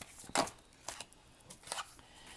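A deck of animal oracle cards being shuffled by hand: a few short swishes of cards sliding against each other, the loudest about a third of a second in.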